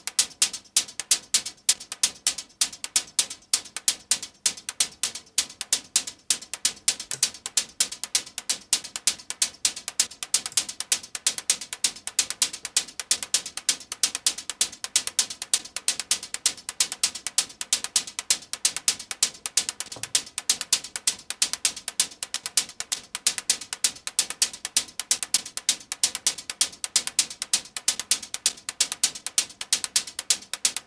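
Synthesized techno hi-hat loop from a modular synthesizer: crisp, high, metallic ticks repeating fast in an even rhythm, several a second, with delay echoes between the hits.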